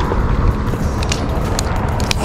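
A hooked bass being lifted out of the water and swung up onto a concrete bank: a steady rushing noise with a few short, sharp clicks and slaps about a second in and again shortly after.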